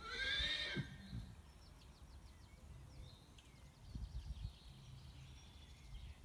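A horse whinnies once, a short high call lasting under a second at the start. A few soft thumps follow about four seconds in.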